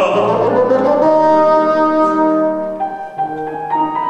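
A singer's held note with vibrato dies away in the first second. Then bassoon and piano play sustained chords, moving on to shorter, changing notes near the end.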